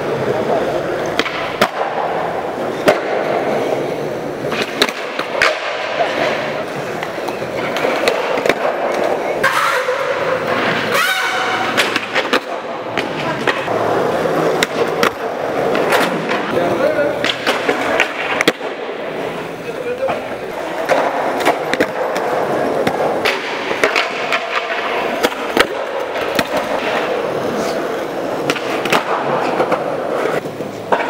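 Skateboard wheels rolling on concrete, broken by repeated sharp clacks of tails popping and boards slapping down as skaters attempt tricks.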